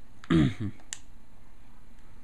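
A man's brief spoken "uh", then a single sharp click just under a second in, over a steady low hiss.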